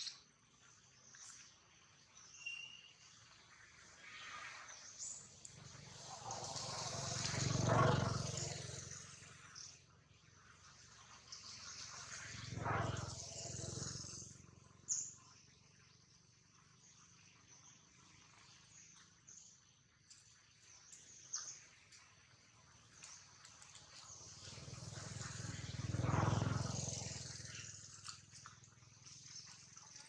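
Quiet outdoor background noise that swells and fades three times, peaking about a quarter of the way in, again just under halfway, and again near the end. Each swell is a low rumble with a hiss over it, building over a few seconds and then dying away.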